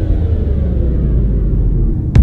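Loud, deep bass rumble of a cinematic logo sting, with faint tones sliding slowly downward over it.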